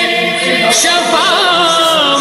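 Urdu devotional song in praise of Imam Hussain, sung unaccompanied. Here it holds long notes without words, with a wavering ornamented run about the middle.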